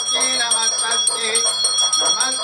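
Temple bell rung rapidly and continuously, its high ringing tones sustained under a fast, even run of strokes, during aarti (the lamp offering to the goddess). Voices chant along underneath.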